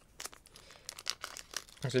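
Faint crinkling and scattered light clicks of trading cards and a foil booster-pack wrapper being handled.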